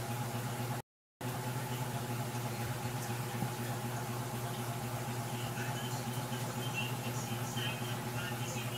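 A steady low machine hum with several even overtones, such as a fan or small motor running, broken by a brief cut to silence about a second in.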